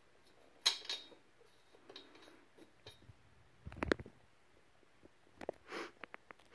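Faint clicks and clinks of a small screw and the steel desk-leg frame being handled, with a short louder knock about four seconds in.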